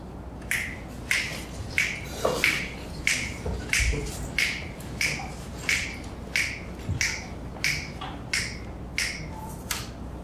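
Steady finger snaps setting the tempo for the band before it starts a tune, evenly spaced at a little under two a second.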